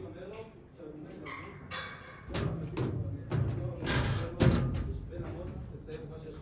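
Voices of people, with no clear words, and a run of knocks and thumps in the second half, the loudest about four and a half seconds in.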